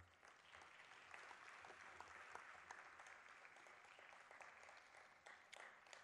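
Faint audience applause, many hands clapping, swelling over the first second, holding steady, then thinning out near the end.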